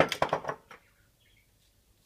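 A glass bowl set down on the counter with a quick clatter of knocks and clinks lasting about half a second, then one lighter knock as a knife is picked up.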